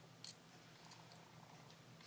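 Near silence with a few faint small clicks, the clearest about a quarter second in: flat-nose pliers closing and shaping a metal crimp bead cover on beading wire.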